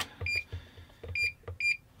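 Fluke electrical installation tester beeping three times, short high beeps, during an insulation resistance test, with faint button clicks in between.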